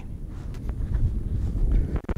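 Wind buffeting the microphone: a steady low rumble.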